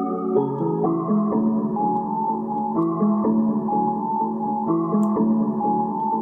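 A melodic sample loop playing back after being pitched down and time-stretched to 125 bpm, carrying the reverb and ping-pong delay rendered into it earlier: keyboard-like chords that shift about every two seconds over a moving lower line.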